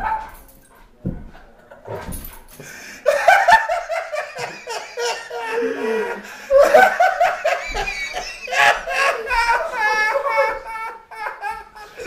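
A man's uncontrollable belly laugh. It starts as short, quieter gasps, and from about three seconds in breaks into loud, high-pitched, wheezing bursts of laughter, one after another.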